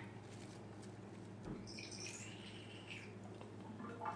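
Faint rustle of shredded iceberg lettuce being sprinkled by hand onto tostadas, with a soft knock about a second and a half in, over a steady low hum.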